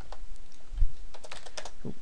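Computer keyboard being typed on: a handful of scattered keystrokes, with a dull low thump a little under a second in.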